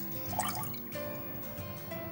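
Background music with steady held tones, over a faint trickle and drip of watered-down tomato puree poured from a glass jar into a cooking pot.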